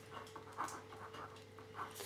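Faint scratching of a pen writing on paper in a few short strokes, over a low steady hum.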